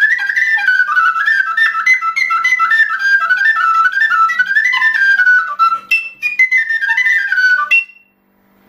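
Serbian frula, a wooden shepherd's flute, played solo: a fast, virtuosic folk melody from southern Serbia in quick, heavily ornamented runs of high notes, breaking off near the end.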